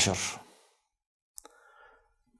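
A man's voice trailing off at the end of a spoken phrase, then a pause broken by a small mouth click and a faint breath before he goes on speaking.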